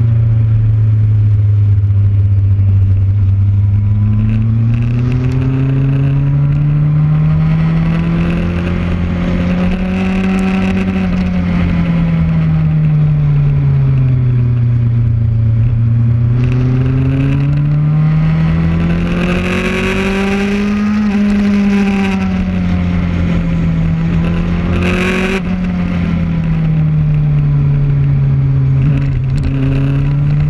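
Sport motorcycle engine heard onboard at track speed, its revs rising and falling slowly as the bike accelerates and slows through the corners, over a steady rush of wind on the microphone. A short burst of wind noise comes near the end.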